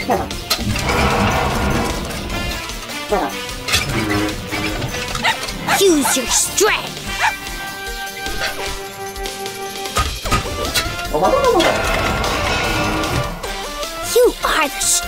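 Cartoon soundtrack: background music mixed with short wordless character vocal sounds and assorted sound effects, including a few sharp knocks.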